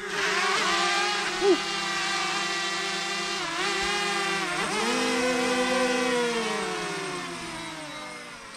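DJI Mavic Mini quadcopter hovering close by, its four propellers and small motors giving a high many-toned whine that wavers and dips in pitch as it is steered. Over the last couple of seconds the whine sinks in pitch and fades as the drone comes down.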